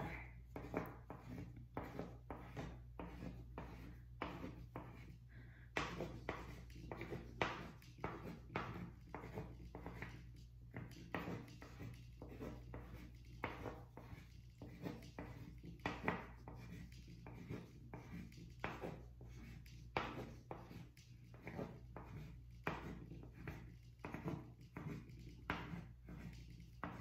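Pen drawing hearts on paper clipped to a clipboard: faint, quick scratchy strokes, two or three a second, in an irregular rhythm.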